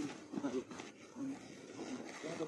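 Faint, scattered speech from people nearby, in short fragments.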